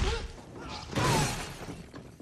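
Action-film fight sound effects: a heavy crash with shattering debris at the start and a second impact about a second in, each trailing off in falling rubble.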